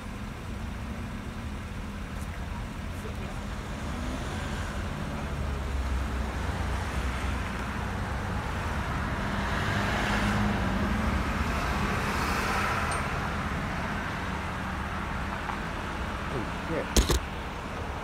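Road traffic: a vehicle passing by, building to its loudest about ten to twelve seconds in and then fading, over the steady low hum of idling engines. A sharp knock near the end.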